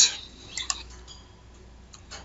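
A few soft computer-mouse clicks about half a second in, over a faint low hum.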